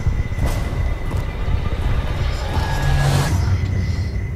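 Movie trailer soundtrack playing: music with heavy, steady deep bass, and a swelling whoosh that builds to about three seconds in and then falls away.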